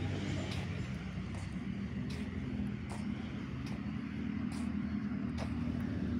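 Steady low rumble of distant road traffic, with faint light ticks about once a second.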